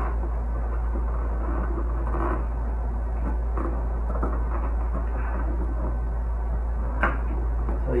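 Fingers picking and scraping at the tape of a cardboard box, opened by hand without a cutter: faint scratching and rustling over a steady low hum, with a sharp click about seven seconds in.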